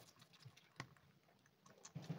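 A young kitten suckling from a feeding bottle: a few faint, irregular wet clicks and smacks.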